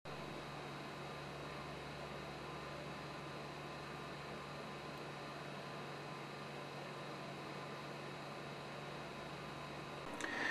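Steady low hum under an even hiss that does not change: quiet workshop room tone.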